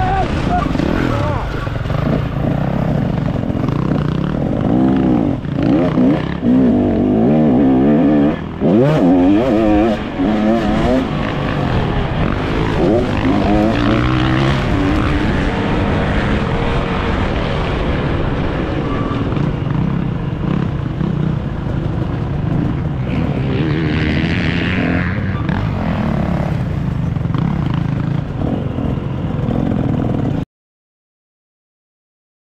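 Single-cylinder two-stroke engine of a KTM 250 SX motocross bike running under load, its revs rising and falling repeatedly as it is ridden through the gears, most sharply between about four and eleven seconds in, then steadier.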